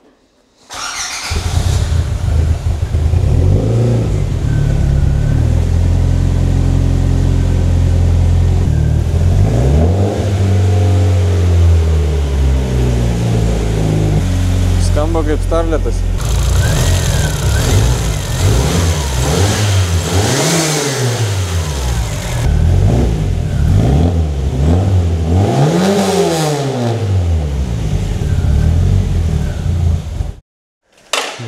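Turbocharged 1.3-litre pushrod four-cylinder car engine starting about a second in and idling, then revved up and down repeatedly. It runs through a freshly built exhaust on a first test run.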